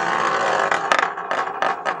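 A spinning top scraping and rattling on a rough, granular tabletop: a steady hiss of friction broken by many small clicks.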